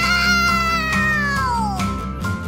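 A long, high-pitched cry that swoops up, holds for over a second and slides back down near the end, over bouncy background music.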